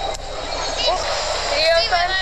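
Short high-pitched voice sounds, about a second in and again near the end, over a steady background noise.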